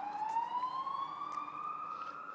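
An emergency-vehicle siren wailing, its pitch rising slowly and steadily.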